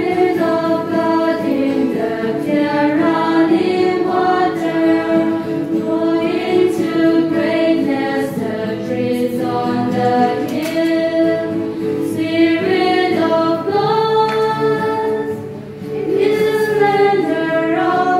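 A choir singing a closing hymn in sustained phrases, with one brief break between lines near the end.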